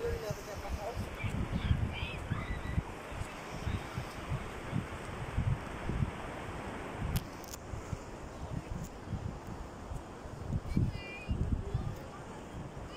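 Outdoor wind buffeting the phone's microphone in uneven gusts over a steady hiss, with a few short high calls about a second in and again near the end.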